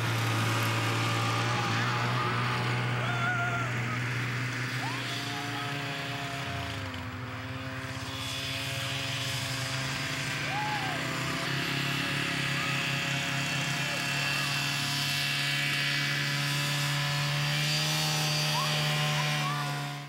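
Four-wheeler ATV engine running steadily, its pitch dipping a little about seven seconds in and then slowly climbing toward the end.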